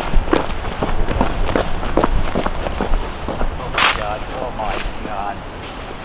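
Footsteps of a person running hard, about three quick strikes a second, slowing after about three seconds. A loud rustling burst comes about four seconds in, followed by a few short wordless voice sounds.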